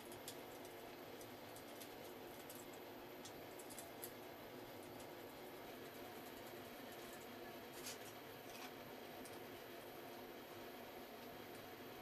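Faint scattered clicks and taps of a small screwdriver and 3D-printed plastic body panels being handled as a door is fitted, a few seconds apart, over a low steady room hiss.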